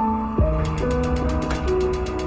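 Gas hob's piezo igniter clicking rapidly, about ten clicks a second, starting just over half a second in as the burner knob is held turned. The burner does not catch, because the gas supply's main valve is shut.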